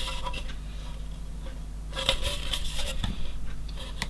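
Handling noise of a 1/35 plastic model tank's lower hull being turned over in the hands: light scraping of styrene against skin and a few soft clicks and taps, over a low steady hum.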